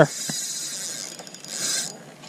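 Fishing reel being cranked fast to retrieve a lure just cast at a pike: a steady rasping whir that grows louder near the end.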